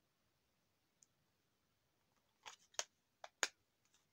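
Small hard-shell manicure set case being handled: near silence, then about four sharp clicks and taps in the second half.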